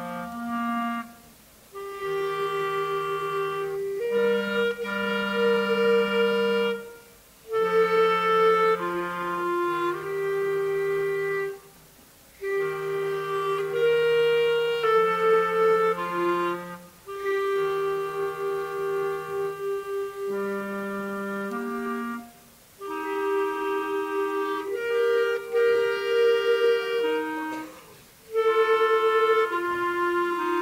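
A trio of clarinets played by young students, holding sustained notes in harmony. The phrases break off in brief pauses about every five seconds.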